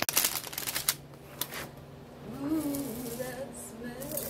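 Vegetable medley poured from a plastic bag into a slow cooker pot: bag crinkling and a quick clatter of vegetable pieces for the first second and a half, then a faint voice in the background.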